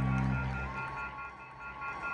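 A low sustained bass note through the PA, with a few overtones, that stops less than a second in, followed by a faint wavering higher tone as the stage goes quiet between songs.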